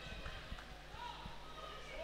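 Faint voices in the background over low room noise, with a couple of soft knocks.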